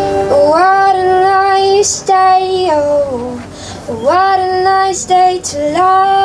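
A woman singing live into a microphone: long held notes, each scooped up into from below, in short phrases broken by brief pauses.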